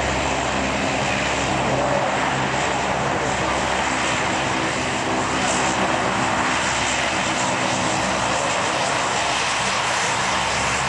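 Four Allison T56 turboprop engines and propellers of a USMC C-130 Hercules running steadily as it taxis past, a constant drone with a hum of several steady tones beneath it.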